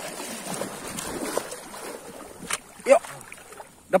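Shallow seawater sloshing and splashing as a person wades through it, loudest in the first two and a half seconds.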